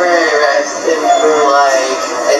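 A high-pitched, sped-up voice chattering rapidly in short, fast-bending phrases, too quick to make out words.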